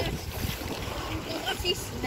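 Wind blowing across the microphone: a steady hiss with a low rumble.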